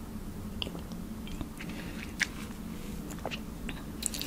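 Close-miked mouth sounds of drinking water from a glass: scattered small wet clicks, one sharper about two seconds in, over a steady low hum.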